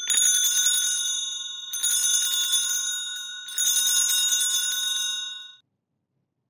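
Altar bells shaken in three rings of about two seconds each, one right after another, a jangle of many high bell tones that fades after the last. They are rung at the elevation of the consecrated host.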